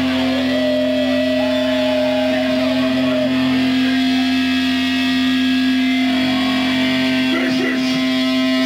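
Distorted electric guitar through an amplifier, left ringing as a steady held drone with no drums, a wavering higher note over it for the first few seconds.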